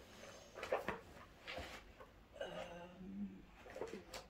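Faint, sparse clicks and light rustles of small objects being handled on a tabletop.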